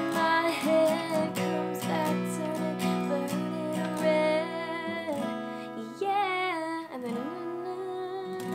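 Capoed Fender Sonoran acoustic guitar strummed in a down-down-up-up-down-up pattern through the outro chords Fsus2, A minor and Gsus4, with a woman singing the melody over it.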